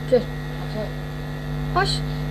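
Steady electrical hum, the kind of mains hum a recording device picks up, running unchanged under a short voice sound just after the start and a spoken word near the end.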